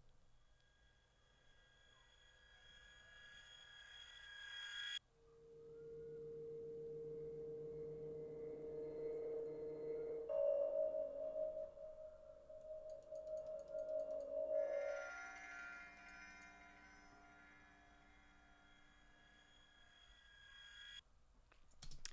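Sound-design playback of synthesized drones. A swell builds over a few seconds and cuts off abruptly about five seconds in. Sustained, bell-like synth tones follow, step up in pitch around halfway, thin out, and stop suddenly near the end.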